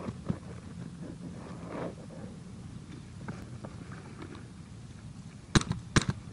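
A low steady rumble with faint rustling, then near the end two sharp pops of a paintball marker firing, about half a second apart.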